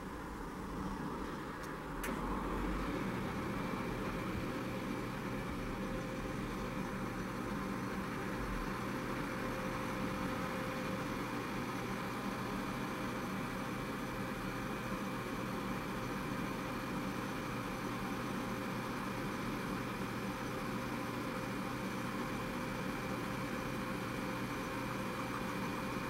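Steady mechanical hum of a running motor with a few faint held tones. It grows louder after a click about two seconds in, then holds steady.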